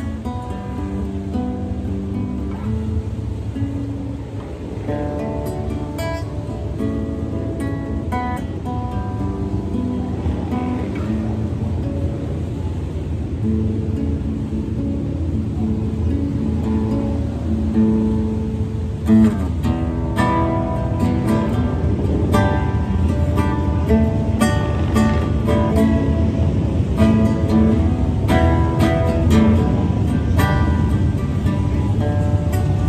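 Nylon-string classical guitar played instrumentally, single plucked notes and chords. A low aircraft rumble builds underneath it through the second half, a military cargo plane that the player identifies as a C-130.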